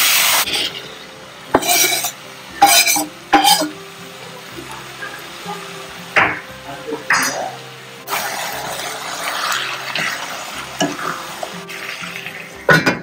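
Chicken frying in a stainless steel pan, sizzling while a wooden spatula stirs and scrapes it. There are a few short, sharp scrapes early on and again around the middle. The sizzle settles into a steadier hiss from about two-thirds of the way in.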